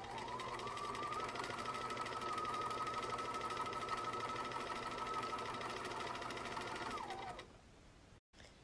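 Electric sewing machine running a straight stitch through two layers of fabric along a curved seam. The motor whine rises as it speeds up over the first second, holds steady with rapid needle strokes, then winds down and stops about seven seconds in.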